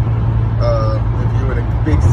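Steady low drone of a cargo van heard from inside the cab, under a man's voice talking.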